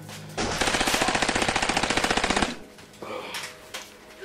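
A single burst of rapid automatic gunfire, roughly a dozen shots a second, starting about half a second in and lasting some two seconds before cutting off. It is a machine-gun sound effect dubbed into the skit.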